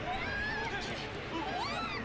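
Character voices from the anime episode playing, their pitch rising and falling.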